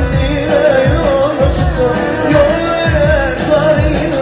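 A man sings a Turkmen pop song live into a handheld microphone, his voice wavering up and down on the melody. Under it runs amplified backing music with a steady beat of deep drum hits that drop in pitch.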